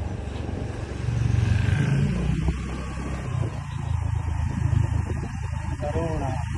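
Motor vehicle engine running while travelling along a road, with rushing air noise. It gets louder about a second in and briefly rises in pitch around two seconds.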